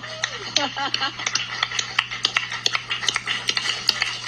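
A person laughs briefly, then a run of sharp, irregular clicks follows, a few a second, over a steady low hum.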